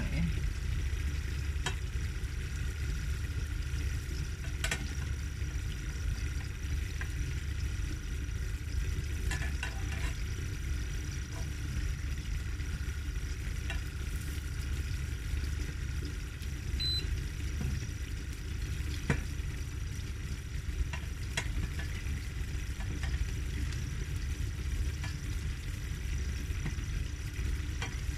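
Egg-coated bread frying in a pan with a steady sizzle, and a few short scrapes and taps of a plastic spatula against the pan as the bread is pressed and folded.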